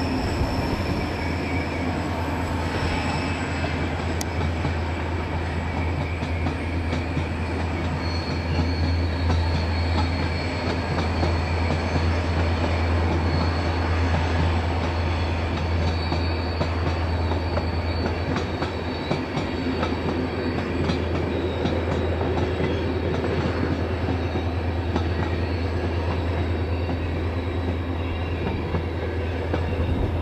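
Diesel locomotive hauling a passenger train, its engine a steady low drone, with a faint high squeal of wheels on the curve from about eight seconds in.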